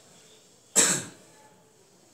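A man coughs once, sharply, about three-quarters of a second in.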